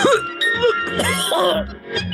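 A cartoon wolf's voice coughing and choking on cigarette smoke over background music.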